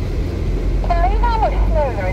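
Steady low drone of a 4x4's engine and tyres heard from inside the cabin while driving slowly. A person starts talking about a second in.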